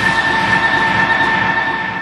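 City tram running, a steady high whine over a rumbling noise, beginning to fade near the end.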